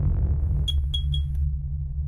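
Logo intro sound design: a deep, steady low rumble with three quick, high, bright pings a little under a second in.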